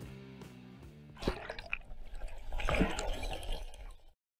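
Music fading out over the first second, then river water splashing and gurgling in irregular bursts until near the end.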